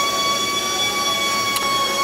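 Workshop machinery running steadily: a constant rushing noise with several high whining tones held over it. A single sharp click about one and a half seconds in.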